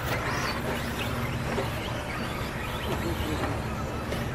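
Electric RC off-road buggies racing on a dirt track: motor whine rising and falling over a steady outdoor hiss, with a short rising whine about half a second in.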